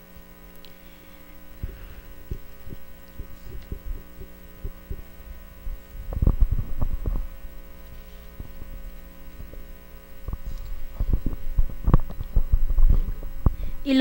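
Steady electrical mains hum with low rumbling thumps of a handheld microphone being handled, in a cluster about six seconds in and again from about eleven seconds on as the microphone changes hands.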